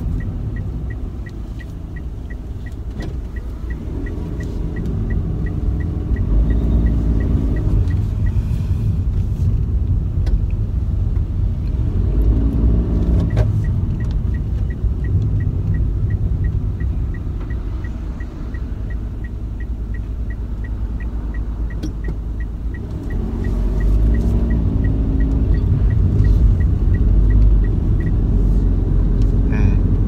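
Car cabin on the move: steady road and engine rumble, with the engine note rising and falling a few times as the car pulls away and slows. A turn-signal indicator ticks steadily, about two to three ticks a second, through the first several seconds and again from the middle until near the end.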